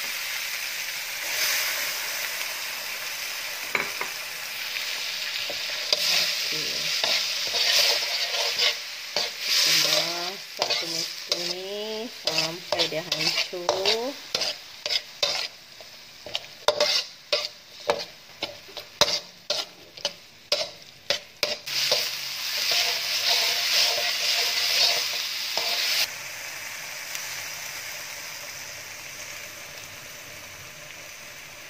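Diced tomatoes and onion paste sizzling in hot oil in an aluminium wok while being stirred with a metal spatula. The spatula scrapes and clicks against the wok in a quick run of strokes through the middle. The sizzle drops suddenly about four seconds before the end.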